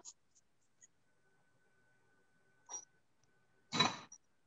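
Mostly near silence with a faint steady hum, broken by brief handling noises from a wire-mesh sieve and stainless steel mixing bowl as flour is sifted. A short clatter comes near the end.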